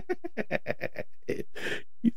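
A man laughing: a quick run of short ha-ha pulses, about seven a second, ending in a breathier burst near the end.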